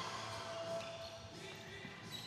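Live basketball game sounds in a large gym: the ball bouncing on the hardwood court amid players' movement, fairly faint.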